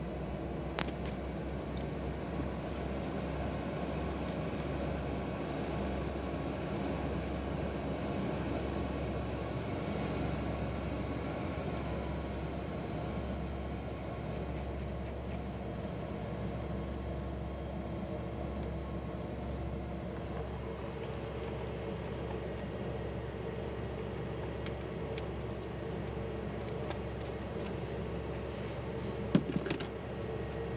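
Steady hum inside a Pilatus PC-24 cockpit from its just-started left (number 1) Williams FJ44 turbofan running at idle, with a few faint steady tones. A few faint clicks of cockpit switches and keys come over it.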